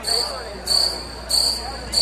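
A break in the dance music mix filled by high-pitched chirps, four short pulses about two-thirds of a second apart, like a cricket-chirp sound effect.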